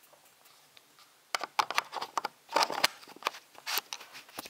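Irregular clicks, taps and scraping of a small camera lens and its mount being handled and taken off, starting about a second in after a quiet moment.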